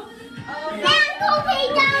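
Speech: children's voices talking and calling out, starting about half a second in.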